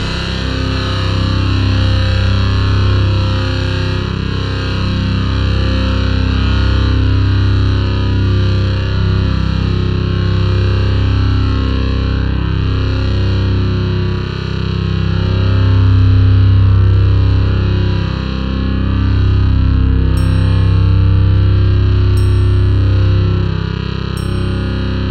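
Metal music: heavily distorted, effects-laden electric guitar sustaining low, droning chords. A few short high ticks come in about every two seconds near the end.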